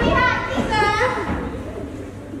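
Raised, high-pitched voices shouting in two quick bursts in the first second as two actors grapple on stage, with a lower voice under them, then quieter for the last second.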